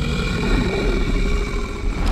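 Film trailer sound design: a steady deep rumble with several held high tones ringing over it.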